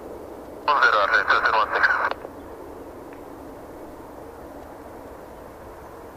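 A short air-traffic-control radio call comes through a scanner speaker about a second in. Otherwise the distant Airbus A320's jet engines run steadily as it moves slowly on the runway.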